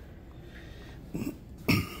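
A man clearing his throat: two short rasps about half a second apart, the second louder.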